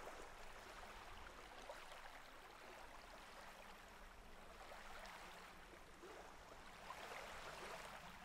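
Faint, gentle ocean surf: small waves washing up onto a sandy beach. One wash swells louder near the end.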